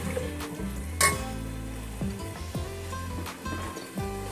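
Background music over vegetables sizzling in an aluminium pot as a steel spatula stirs them. A sharp clink of the spatula against the pot comes about a second in.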